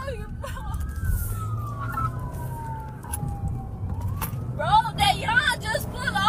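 Police siren heard from inside a moving car: a slow wail that falls over about three seconds and starts rising again about four seconds in, over low road rumble. Excited voices break in near the end.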